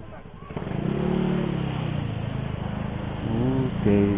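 Motorcycle engine pulling away and picking up speed. It gets louder about half a second in, and its pitch climbs twice as the throttle opens.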